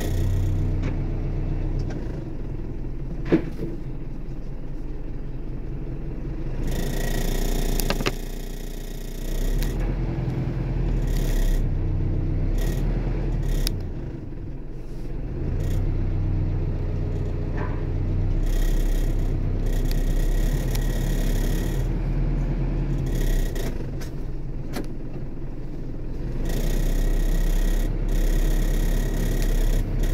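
Vehicle engines running nearby: a steady low rumble that swells and fades, with a sharp click about three seconds in and another about eight seconds in.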